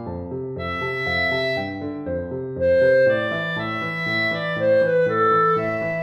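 Chamber music for flute, clarinet and piano: the piano keeps up a steady running eighth-note accompaniment while the winds hold long melody notes above it. The winds swell to a louder held note about two and a half seconds in.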